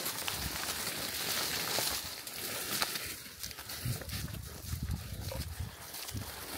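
Leaves and branches rustling and brushing close against the camera as someone pushes through dense overgrown brush, with scattered small snaps and a run of low thumps about four seconds in.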